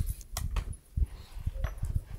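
Soft handling sounds: a few light clicks and low thumps as gloved hands work a length of string.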